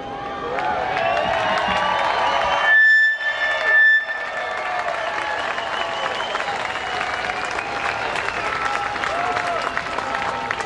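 Concert crowd cheering and applauding, many voices whooping at once. About three seconds in, a loud, steady, piercing whistle rises above the crowd for roughly a second.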